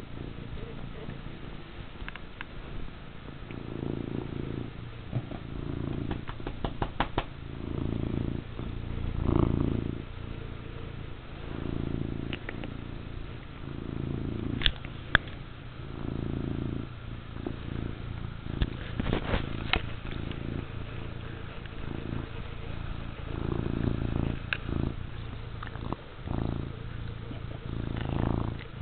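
Domestic cat purring close up, the purr swelling and fading about every second and a half with each breath. Scattered sharp clicks, some in quick runs, come from the cat pawing at the camera and its cord.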